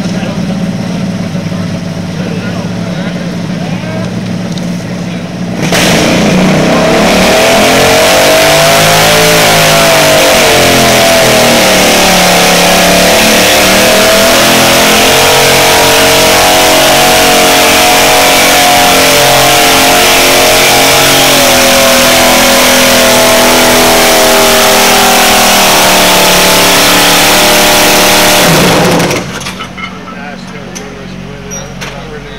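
Garden tractor engine pulling a weight-transfer sled. It goes suddenly to full throttle about six seconds in and runs hard and loud for over twenty seconds, its pitch rising and then sagging as the load builds, before the throttle is cut back near the end.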